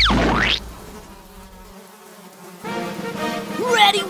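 A quick swooshing sound effect as the title card appears, then a lull, then an insect-like buzzing that swoops up and down in pitch toward the end.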